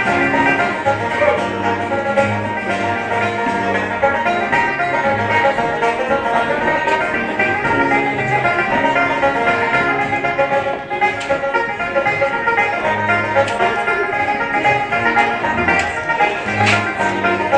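Live Irish traditional dance music: a fast reel played by a band, with banjo prominent in the melody over a pulsing bass accompaniment.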